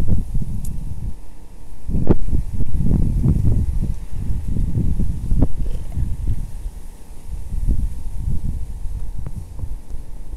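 Wind blowing across the microphone: loud, irregular low rumbling gusts that rise and fall every second or so.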